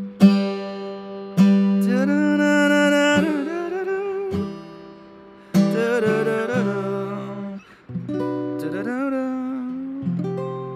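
Acoustic guitar chords struck and left to ring, four in all, with a man singing a slow melody over them.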